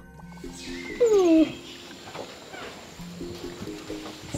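White-faced capuchin monkey giving a loud falling cry about a second in, followed by a few fainter falling calls, over background music with held low notes.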